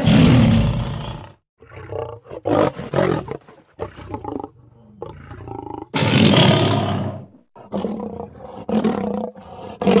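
Tiger roaring: one long loud roar right at the start, a cluster of shorter roars, a second long roar about six seconds in, then a run of shorter roars.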